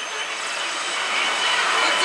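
Pachislot machine sound effect during a bonus-chance presentation: a whooshing rush that swells steadily in loudness, over the constant noise of a pachinko parlor.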